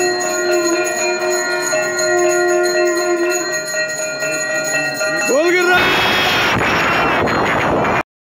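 Temple bells ringing continuously during an aarti, their tones holding steady and overlapping. About six seconds in, the sound switches abruptly to a louder, denser clamour.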